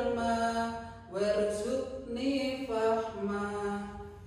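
One voice chanting an Islamic prayer (doa) in Arabic, holding long melodic notes in phrases of a second or so with short breaks between them.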